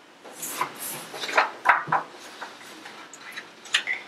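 Paper sheets rubbing and sliding on a wooden tabletop while a pen is passed and set down: a run of short clicks and rustles in the first half, and another sharp click near the end.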